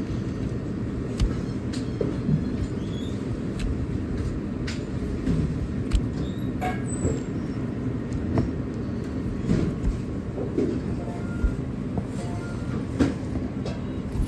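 Chinese cleaver slicing through braised beef and knocking on a plastic cutting board: about a dozen sharp knocks at uneven intervals, over a steady low kitchen rumble.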